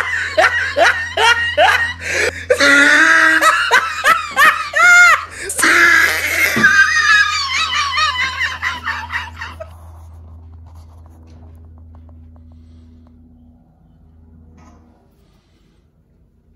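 A person laughing hard in rapid, repeated bursts for about ten seconds, then fading out. A faint steady hum is left after the laughter.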